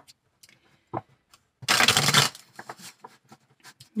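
A Deviant Moon tarot deck being shuffled by hand: a couple of short card clicks, then a dense half-second burst of shuffling just before the middle, trailing off into soft ticks of cards.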